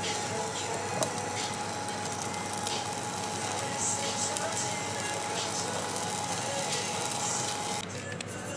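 Raw potato sticks sizzling in oil in a frying pan, a steady hiss with scattered small crackles and one sharper click about a second in.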